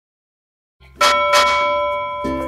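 Silence, then a single bell-like chime struck about a second in, ringing on and slowly dying away.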